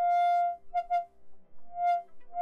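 A DIY polyphonic synth running on an Axoloti board, being test-played: repeated notes at one pitch in a bright tone rich in overtones. A long note opens, two short notes follow about a second in, and a softer note swells in near the end.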